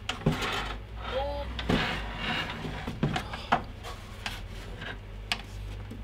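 Handling noise from a heavy benchtop logic analyzer being shifted on a table: scattered knocks and clicks with rubbing from its fabric cover as it is moved and turned round.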